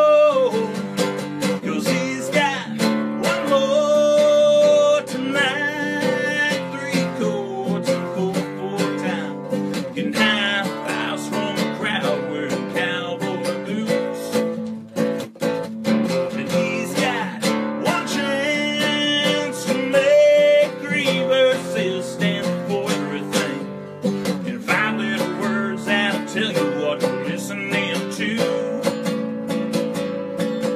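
Acoustic guitar strummed steadily under a man's singing voice: a solo country song played live.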